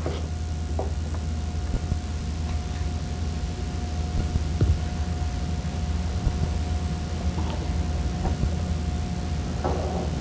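Steady low electrical hum with a thin steady tone above it, and a few faint, scattered metallic clicks and taps of a wrench and Allen key working the armature hex nut on the motor.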